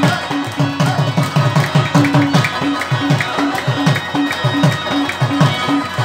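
Instrumental Pashto folk music: harmoniums and a rabab over a fast, steady hand-drum beat whose low strokes drop in pitch.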